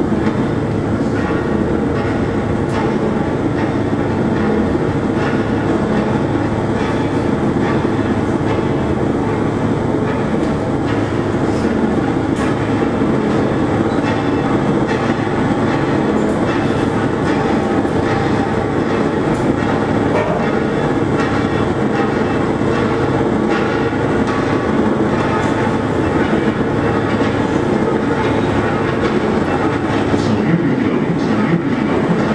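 Live experimental noise music from unplugged, battery-powered instruments: a dense, steady rumbling drone with many small crackles and clicks running through it.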